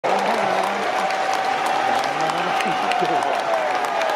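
Large ballpark crowd applauding steadily, with voices carrying over the clapping.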